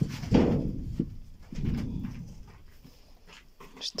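Fox cubs making low, rough sounds in two bursts, one just after the start and another about a second and a half later.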